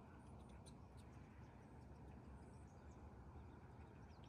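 Near silence, with faint scattered chirps of small songbirds in the distance over a low steady background hum.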